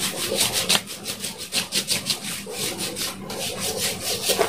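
Hands rubbing body serum into bare skin in quick back-and-forth strokes, about five a second.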